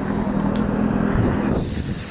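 Road traffic passing close by at an intersection: a vehicle's engine and tyre noise, with a steady engine tone, swells and fades out about a second and a half in. A brief hiss follows near the end.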